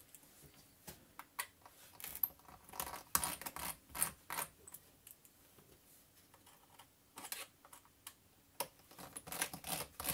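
Faint, irregular small clicks and taps of a precision screwdriver working the tiny screws out of a MacBook Pro A1150's aluminium bottom case, with a quieter lull in the middle.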